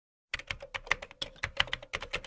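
Computer keyboard typing sound effect: a quick, uneven run of key clicks, about eight a second, starting about a third of a second in.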